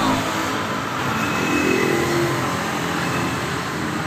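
Steady street traffic noise from passing vehicles.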